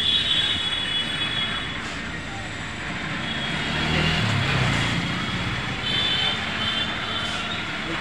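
Steady background din with indistinct voices, and a short high-pitched tone near the start and again about six seconds in.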